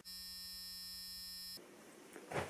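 A steady electronic buzz at one low pitch, the kind of test-pattern 'technical difficulties' sound effect laid over television color bars. It cuts off suddenly about a second and a half in.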